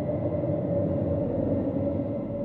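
A low rumbling swell from a logo sound effect, at its peak and starting to ease off near the end.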